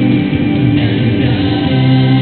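A church hymn sung by a choir, with long held notes near the end.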